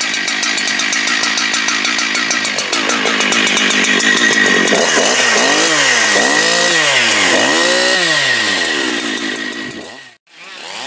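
A two-stroke chainsaw engine running at high revs, then revved up and down several times in throttle blips from about halfway. The sound falls away near the end.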